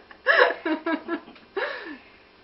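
A woman laughing: a run of short laugh pulses, then a last, longer laugh near the end that falls in pitch and trails off.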